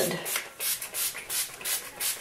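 Heat protection spray bottle being spritzed onto wet hair: a rapid series of short hissing sprays, about three a second.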